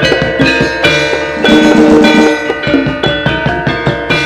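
Live Javanese jaranan gamelan music: struck metal keyed instruments ring over drum strokes in a fast, steady beat.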